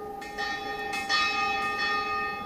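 Church bell struck several times, each stroke ringing on so the tone carries through between strokes.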